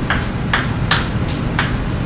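About five short, sharp taps or clicks in two seconds, over a steady low hum.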